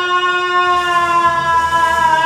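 A male singer holding one long note in a nagara naam devotional chant, the pitch sinking slightly as it is held. A low hum joins underneath about half a second in.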